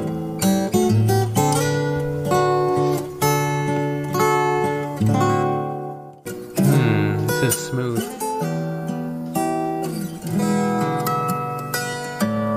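Solo acoustic guitar played fingerstyle: a plucked melody over bass notes, with chiming harmonics. The playing breaks off briefly just before the middle and then resumes.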